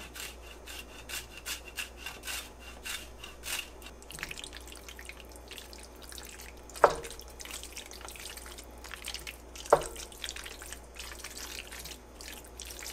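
Hard cheese being grated over a pot in quick, even scraping strokes. Then a wooden spoon stirs thick sauced pasta with a soft wet squelching, knocking sharply twice against the stainless steel pot.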